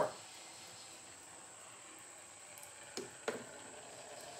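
Victor M spring-wound phonograph motor running quietly on its wooden motor board, a faint steady whir from its freshly lubricated brass gears. About three seconds in come two short knocks, close together, as the motor board is set down on the bench.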